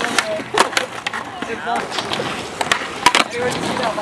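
Skateboard rolling on smooth concrete, the wheels giving a steady rumbling hiss, broken by several sharp clacks of the board, the loudest a little after three seconds in.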